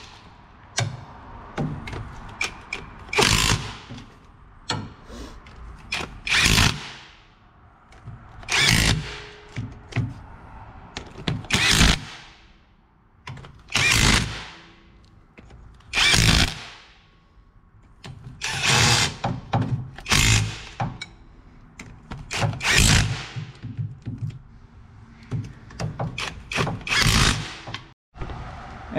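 Quarter-inch impact driver running down the steel rear differential cover bolts one after another: about a dozen short bursts, each under a second, a second or two apart, with small clicks and knocks between as the tool moves from bolt to bolt.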